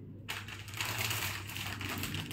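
Clear plastic packaging crinkling and rustling as a bagged suit is handled, starting about a third of a second in.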